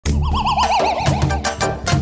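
Channel intro jingle: a warbling tone that wavers quickly up and down while sliding lower over the first second, over a bass line and sharp percussion hits.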